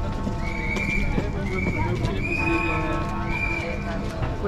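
Horses' hooves clip-clopping on the road amid crowd chatter, with four short held high notes in a row partway through.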